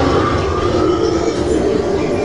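Haunted-house maze soundscape played over loudspeakers: a loud, steady, low rumble with a dense noisy layer above it.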